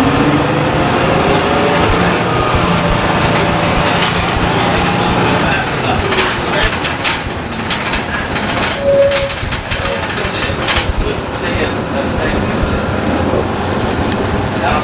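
Detroit Diesel 6V92 two-stroke V6 diesel of a 1993 Orion V transit bus running, with a steady engine note for the first five seconds or so that then drops away. Knocks and rattles of the bus follow.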